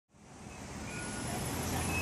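City traffic noise, a steady rumble and hiss of road vehicles, fading in from silence over the first second.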